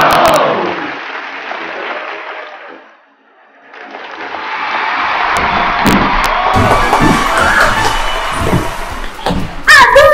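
Recorded crowd cheering and applauding. A loud burst at the start dies away over about three seconds, then a second, longer swell of cheering and clapping builds from about four seconds in and holds to the end.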